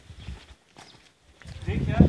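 Faint footsteps on bare sandstone, a few soft scuffs. A person's voice comes in near the end.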